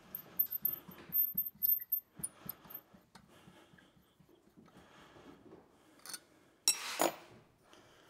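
CVT clutch parts and rubber drive belt being handled in the open belt case of an ATV: scattered light clicks and knocks over the first few seconds, then a quiet stretch and one short, harsher noisy rush about seven seconds in.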